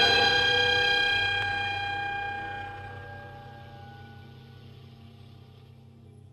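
The ringing decay of a loud chord from a chamber ensemble with piano: several steady, bell-like tones sustain and fade slowly away.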